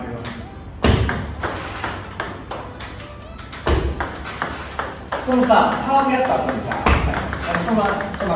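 Table tennis serves: the ball ticking as it is struck and bounces on the table, with a louder knock about every three seconds, once a second in, near four seconds and near seven seconds.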